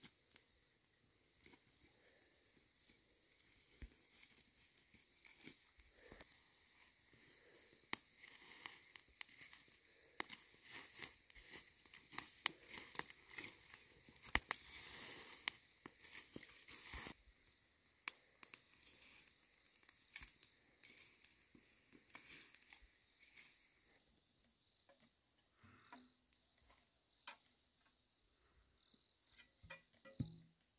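Dry grass crackling as it burns in a smouldering pile and rustling as it is pushed into the fire with a wooden stick; a quick run of sharp crackles, densest in the middle, then dying down to scattered clicks.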